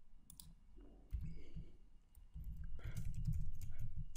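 Computer keyboard keys clicking in scattered keystrokes as a word is typed, over a low rumble.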